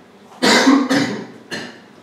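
A man coughing: a loud double cough about half a second in, then a shorter single cough about a second and a half in.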